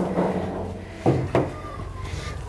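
Hands working wet bread dough in a stainless-steel trough: soft squelching, with two dull knocks about a second in.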